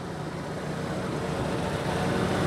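6.5 kW Onan gasoline generator on a motorhome running steadily, a low engine hum that grows slowly louder.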